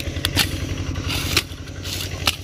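Machete chopping through dry brush and branches, a few sharp cuts at irregular intervals, over a small engine running steadily in the background.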